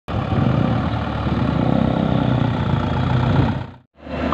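Diesel engine of a Mitsubishi Fuso light truck running steadily as it drives slowly with a combine harvester loaded on its bed; the sound fades out quickly just before the end.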